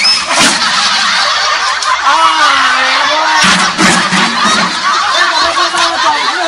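Loud, continuous laughter from many voices at once, in the manner of a dubbed laugh track.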